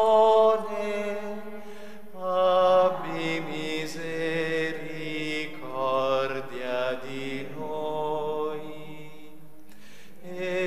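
Slow devotional chant sung in long held notes, with a sustained low note beneath; it grows softer near the end.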